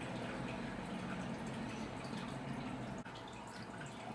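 Faint handling noise from a plastic action figure and its accessory being posed by hand, with small clicks and rubs over a steady low hum.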